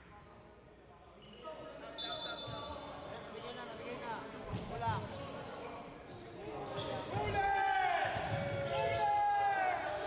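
Basketball bouncing on an indoor hardwood court during play, with short squeaks and voices calling on court. It starts quiet and grows busier and louder from about a second and a half in, and again near the end.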